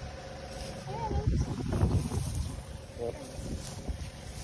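Wind buffeting the phone's microphone, a low rumble, with plants rustling as a hand and feet brush through grass and leafy growth.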